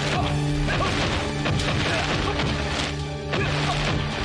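Fight-scene sound effects: a series of sharp punches, smacks and crashes over dramatic background music that holds steady low tones.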